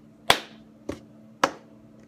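Three sharp hits of a cup rhythm routine, hands clapping and striking a cup on a tabletop, about half a second apart, the first the loudest.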